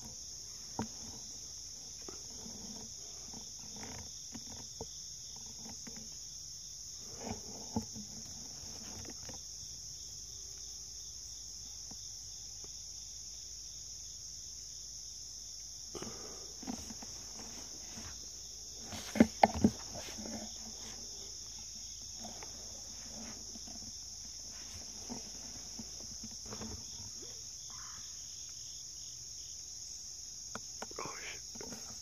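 A steady, high-pitched drone of insects in the woods, with a few scattered sharp knocks and crackles. The loudest is a quick cluster of three or four knocks about two-thirds of the way through.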